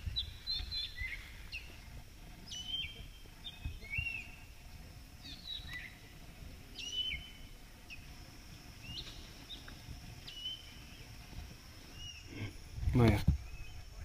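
Birds calling in short, repeated chirps every second or so, each a quick upward stroke ending in a brief level note, over low, even background noise and, from about halfway in, a thin steady high tone.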